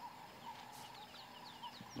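Faint bird calls: a quick run of short, high, downward-sliding chirps over quiet bush background.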